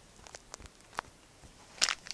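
A blind-bag packet being handled: a few faint clicks and light rustles, one sharper click about a second in, then a short burst of crinkling near the end.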